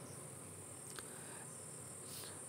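Faint background noise in a pause of narration: a steady high-pitched hiss, with one faint click about a second in.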